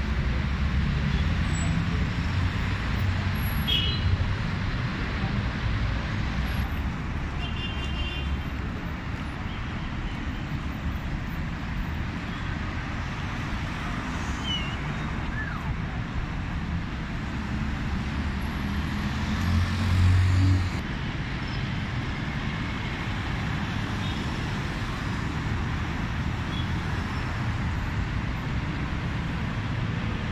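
Road traffic at a busy roundabout: a steady low rumble of car, minibus and motorbike engines and tyres, with one louder, low engine swell about two-thirds of the way through as a vehicle passes close.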